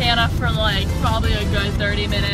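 A woman's voice inside a moving car, over the steady low rumble of the cabin.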